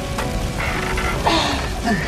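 Dramatic background score with held, sustained tones over a steady hiss of rain, with a brief voice near the end.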